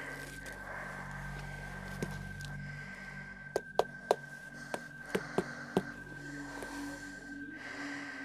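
Slow, heavy breathing through a half-face respirator mask, drawn out over several seconds. A steady high tone runs underneath, and a quick run of sharp clicks comes in the middle.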